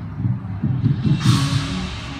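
Marching band opening its show: a run of quick low notes, then a cymbal crash a little over a second in that rings and fades as held chords begin.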